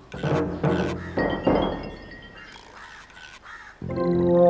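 Dramatic background music with a few loud, sharp percussive hits in the first second and a half, then softer accents.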